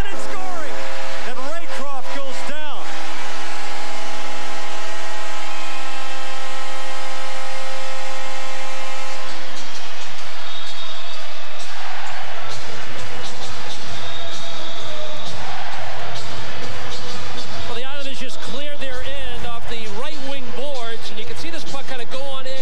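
Hockey arena goal horn sounding one long steady blast for about six seconds, starting a few seconds in, signalling a home-team goal. Before and after it comes a crowd cheering, with voices rising again near the end.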